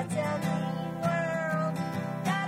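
Acoustic guitar strummed in a steady rhythm, with a voice singing long notes that slide up and down over it.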